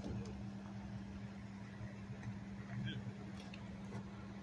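Steady low engine hum of idling emergency vehicles, faint, with a few faint distant voices.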